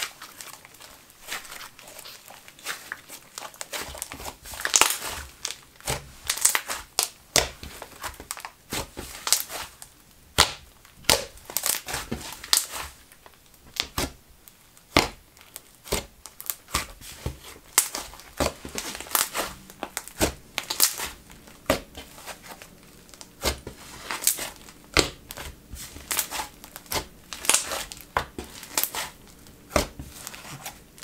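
Hands stretching, squishing and poking a dense, doughy cloud slime, giving many irregular crackling sizzles and small pops as air pockets burst.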